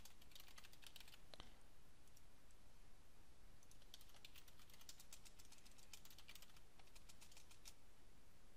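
Faint typing on a computer keyboard: a quick run of keystrokes, a pause of about two seconds, then a longer run of keystrokes.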